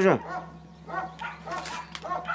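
A dog barking in the background: short barks repeating about every half second, over a steady low hum.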